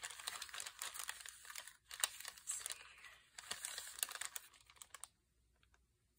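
Paper pieces being handled: rustling and crinkling with many small taps and clicks, stopping abruptly about five seconds in.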